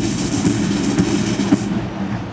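A military band's drums playing a rolling snare beat with heavy drum strokes about twice a second. The drums stop near the end.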